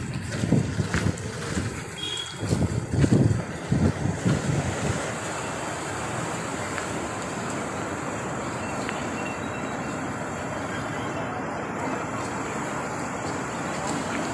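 Wind buffeting the microphone in uneven gusts for the first few seconds, then settling into a steady rushing noise.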